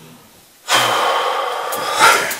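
A man's loud, breathy nervous laugh, close to the microphone, starting under a second in.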